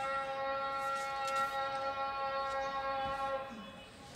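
A long steady pitched tone, holding for about three and a half seconds and then fading out.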